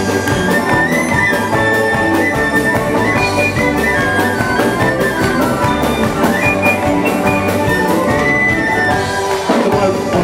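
Live folk band playing an instrumental passage with fiddle and banjo over a steady drum beat.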